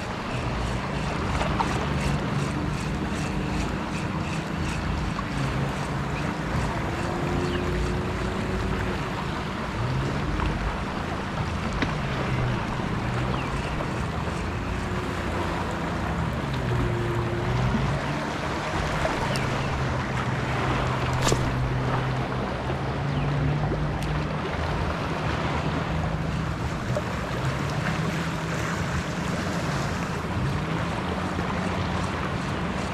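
Steady wind noise on an action camera's microphone over gently lapping shallow sea water, with a low, wavering hum underneath and a single sharp click about 21 seconds in.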